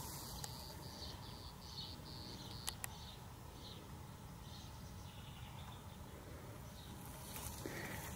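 Faint outdoor ambience: a low steady rumble with faint high chirping calls on and off, and one soft tick about two and a half seconds in.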